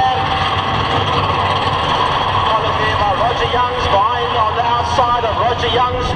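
A pack of V8 stock-car engines running together at low speed as the field rolls bunched up before the start, a steady low drone.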